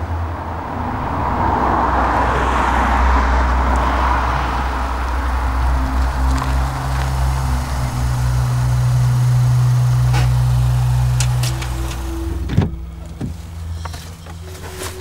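A car approaching along a road at night: its tyre and engine noise swells and then eases as it slows and pulls up. It runs on with a steady low hum for several seconds, and there is one sharp click near the end.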